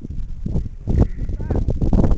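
Indistinct, muffled voices over a low rumble, with a brief faint chirping call about halfway through.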